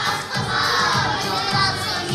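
A group of young children singing together in unison, loud and close to shouting, over backing music with a steady beat.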